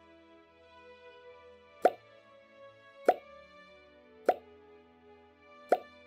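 Soft background music with four short pop sound effects, each about a second or so after the last.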